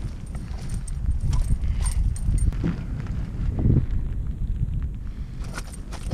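Irregular knocks and clatter in an aluminum boat as a netted pike is brought aboard, over a steady low rumble on the microphone.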